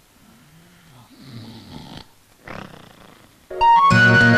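A man snoring in his sleep: one long, low, wavering snore, then a shorter one. Music with sustained keyboard-like notes starts suddenly near the end.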